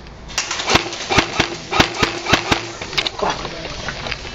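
Airsoft gunfire in a plywood-walled arena: about ten sharp cracks in an irregular string over two and a half seconds, with a faint hum beneath, stopping about three seconds in.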